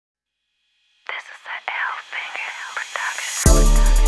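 A rap song's intro: about a second of silence, then a whispered, thin-sounding voice with no bass, then near the end the hip hop beat drops in with heavy bass.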